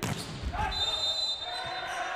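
A volleyball hit hard at the net, then a referee's whistle blown once, a steady high tone lasting under a second, signalling a net-touch fault.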